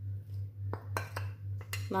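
Metal spoon clinking and tapping against a plate and bowl as flour is tipped into a bowl of syrup. A few sharp clinks come about three quarters of a second in and again near the end, over a steady low hum.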